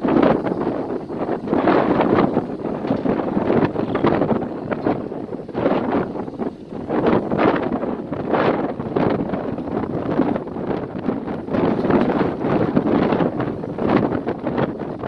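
Wind buffeting the microphone in uneven gusts on an open boat deck: a rough rushing noise that swells and drops every second or so.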